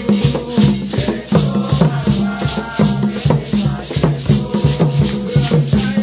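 Group of hand drums played together, djembe and tall barrel drums struck by hand in a steady polyrhythm, with a shaker rattling at about four strokes a second over the deeper drum tones.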